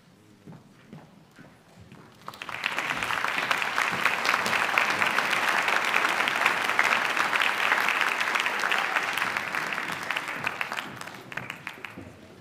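Audience applause in a concert hall. It starts suddenly about two and a half seconds in, holds steady, and fades out near the end.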